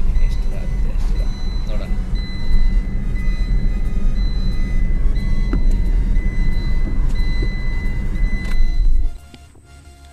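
Car cabin noise while driving slowly on a rough dirt road: a strong, steady low rumble with a thin high tone that comes and goes above it. Both cut off abruptly about nine seconds in.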